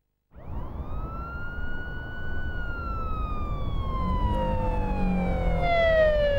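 An emergency-vehicle siren wailing: it comes in about a third of a second in, rises quickly, holds, then slowly falls in pitch for the rest of the time, over a steady traffic-like rumble.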